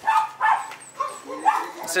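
A dog barking several times in short barks.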